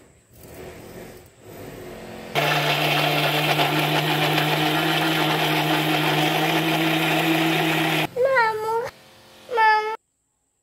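Electric mixer grinder with a steel jar running steadily for about six seconds as it blends sliced kiwi fruit with sugar into juice, then switching off abruptly. Two short high-pitched calls with bending pitch follow near the end.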